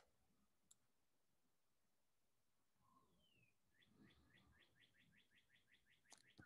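Near silence with a faint bird call: a single falling whistle about halfway through, then a rapid run of about a dozen quick chirps, roughly six a second, near the end.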